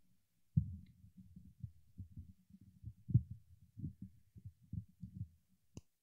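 A faint, irregular run of low, muffled thumps and knocks lasting about five seconds, followed near the end by a single sharp click.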